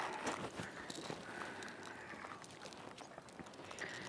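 Faint, irregular small taps and clicks from a freshly landed bass and its fishing tackle being handled on a boat.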